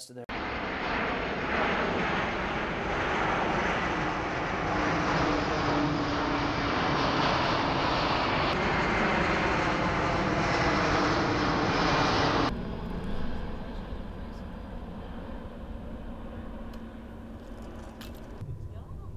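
Jet engines of a large four-engine military transport aircraft in flight, a loud steady rush. It cuts off abruptly about twelve seconds in, leaving a much quieter outdoor background with a faint low hum.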